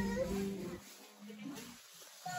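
A woman's voice humming a held, level "mm" that fades out under a second in, followed by faint store background.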